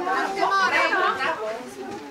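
Many children's voices chattering at once, overlapping talk with no single clear speaker.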